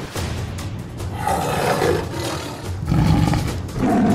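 Big-cat roar sound effects over background music: one roar about a second in, then a deeper, louder roar near the end.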